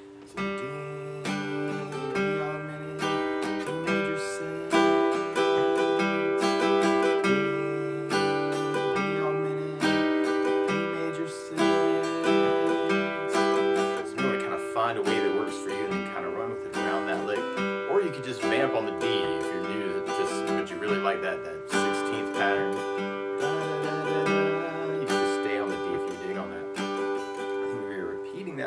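Steel-string acoustic guitar strummed in a down-up pattern, with single bass notes picked on the downbeats. It plays a D chord whose inner note climbs a half step at a time: D, D augmented, D major 6.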